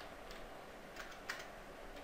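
Faint computer keyboard keystrokes: a few separate key clicks as a word is typed.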